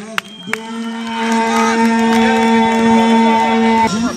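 A man's voice holding one long, drawn-out "goooal" shout for about three and a half seconds: a commentator's goal call.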